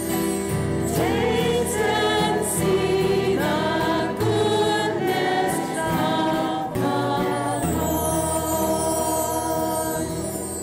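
A female cantor singing the responsorial psalm at Mass into a microphone, over sustained instrumental accompaniment.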